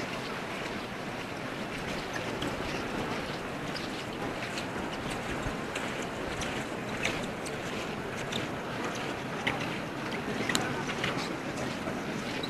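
Steady hubbub of a crowd of visitors inside a large, echoing stone church, with scattered small clicks and knocks through it.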